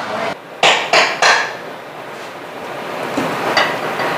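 Three sharp knocks in quick succession about a second in, then a fainter one near the end: hard kitchen utensils or cookware knocking against a pot or counter.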